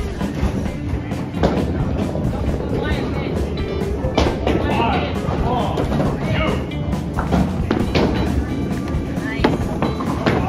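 Busy bowling-alley din: music and background voices, with several sharp knocks and clatters from balls and pins.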